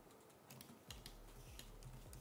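Faint, scattered clicks of a computer keyboard in use, a handful of separate keystrokes.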